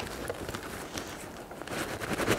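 Coarse burlap hive cover being rubbed and wrung between the hands, a dry rustling with faint crackles as hardened propolis breaks off the cloth.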